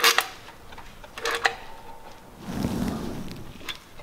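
Metallic clicks and clinks of a hand wrench being worked on the underside of a lifted car, a few sharp ones near the start and a quick cluster about a second in. A short, low rushing noise swells and fades about two and a half seconds in.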